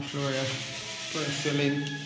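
A steady rough rubbing hiss, with a man's voice in a flat, monotone chant over it at the start and again from about the middle on.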